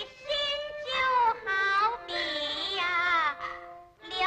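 A woman's high voice singing a phrase of a pingju (Ping opera) aria, its pitch gliding and wavering through long held notes, over instrumental accompaniment, from an old film soundtrack.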